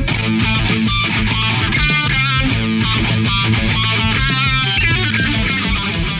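Loud rock music led by electric guitar playing riffs over a steady low bass.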